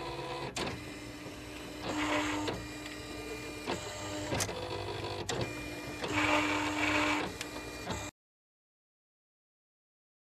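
Silhouette Cameo 3 cutting machine kiss-cutting sticker paper, its motors whirring as the blade carriage and mat move, in two louder stretches, with a few sharp clicks. The sound cuts off suddenly near the end.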